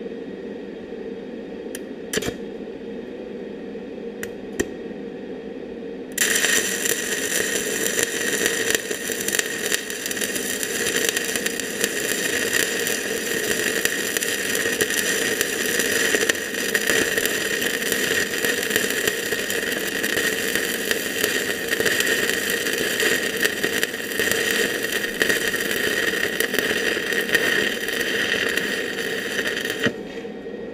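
Stick (shielded metal arc) welding arc, struck about six seconds in after a few short clicks, then burning with a steady crackling hiss.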